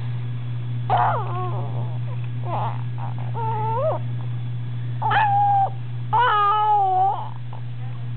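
A baby's high-pitched coos and squeals: four short calls, the last about a second long and wavering in pitch. A steady low hum runs underneath.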